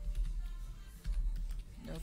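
Scattered clicks of typing on a computer keyboard over background music with a deep steady bass.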